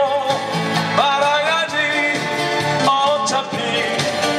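Live acoustic music: a man singing a slow melody with vibrato over two strummed acoustic guitars.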